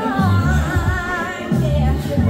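A woman singing live into a microphone over backing music with a bass line; her held notes waver with vibrato.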